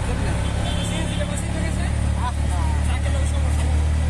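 Steady low engine drone and road noise of an auto-rickshaw heard from inside its caged passenger compartment while riding along a street.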